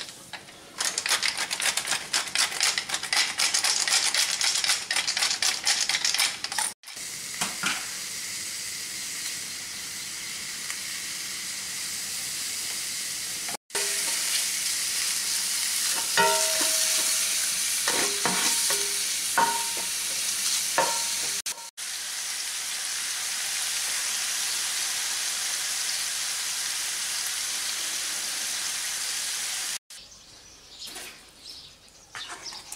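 Ground pork sizzling and crackling in a cast iron skillet as its fat renders out over low heat. A spatula stirs and breaks up the meat, with a few short clinks against the pan. The sound drops out briefly three times.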